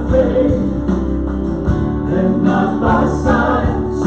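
A live worship band playing a gospel song, with several voices singing together over acoustic guitar and a Kawai MP7 stage piano.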